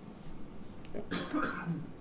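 A person's cough about a second in, amid a brief spoken 'yeah'.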